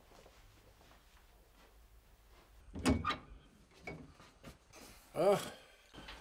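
A wooden front door being unlocked and pulled open: a loud clunk of the latch and door about three seconds in, followed by a few lighter clicks.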